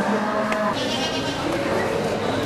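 A calf moos, one long low call that ends under a second in, with a person laughing over it; then a sheep bleats.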